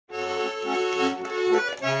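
A garmon, the Russian button accordion, playing an introduction: sustained chords with short bass notes underneath.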